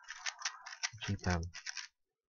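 GAN 3x3 speedcube being turned rapidly by hand through the last layer of a solve: a fast, dense clatter of plastic clicks from the layer turns. The turning breaks off briefly about a second in and picks up again near the end.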